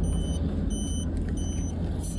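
Inside a car: the vehicle's steady low rumble, with a repeating electronic warning chime, a short high beep about every 0.7 seconds.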